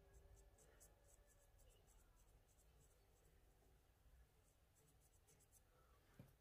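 Near silence: faint room hum with soft, irregular scratchy ticks from a makeup brush working along the eyelid.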